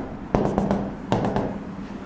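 Marker tip tapping against a whiteboard while dashed lines are drawn: a quick run of short sharp taps in two bursts.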